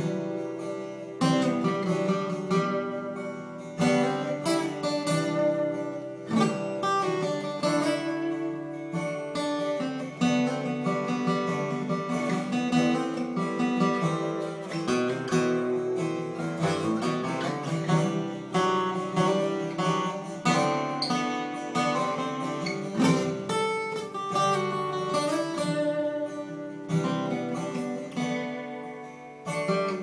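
Acoustic guitar playing single-note lead runs up and down a first-position scale in G, over a strummed chord progression.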